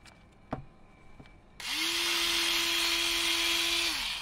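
Cordless rotary electric scissors' motor spinning its circular blade: a click about half a second in, then the motor starts up about a second and a half in, runs with a steady whine, and cuts off near the end.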